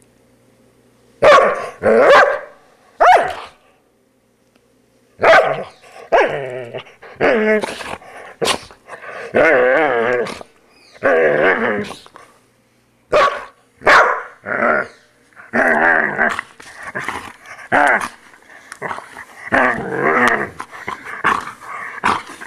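Poodle growling and barking in repeated short bursts as it snaps at a grooming brush waved in front of it. The sound starts about a second in, pauses briefly around the fourth second, then comes almost without a break.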